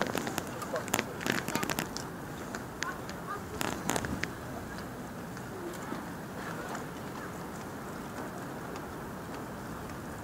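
Steady wind and sea noise, with a cluster of sharp clicks and knocks in the first few seconds.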